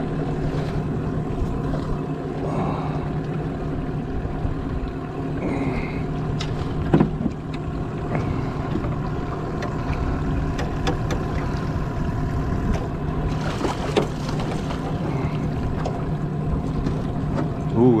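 Small Mercury outboard motor running steadily at trolling speed, an even hum throughout, with a few short knocks on the boat, the loudest about seven seconds in.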